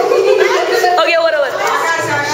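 Several young voices talking over one another: loud, overlapping chatter.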